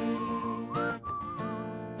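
A man whistling a tune into a microphone, held notes that bend and waver in pitch, over acoustic guitar accompaniment.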